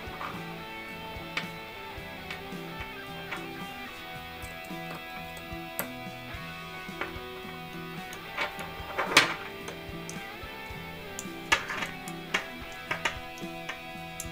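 Soft background music with guitar, and a few short sharp clicks of small metal jack-plug parts being handled and screwed together, the loudest about nine seconds in.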